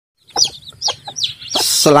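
Young chicks peeping: three short, high chirps that sweep up and down within the first second and a half.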